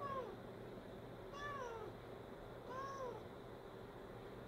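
Domestic cat giving three soft, short meows, each rising then falling in pitch, as it calls up at a bug on the ceiling that it cannot reach.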